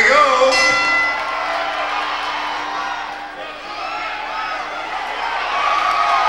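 A boxing ring bell struck once about half a second in, its ring fading over a second or so, over a crowd shouting and cheering as the round begins.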